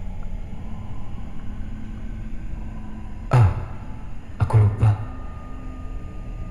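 Horror sound-design ambience: a steady low drone, a sudden loud hit with a falling sweep a little after three seconds, two or three shorter low thuds just after four seconds, then a steady high tone.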